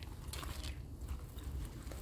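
Rustling and crunching of a safety harness being fitted and tightened on a person standing on gravel, with one brief louder rustle about half a second in, over a low rumble on the microphone.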